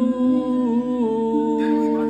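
A man humming a slow, wordless melody in long held notes, unaccompanied.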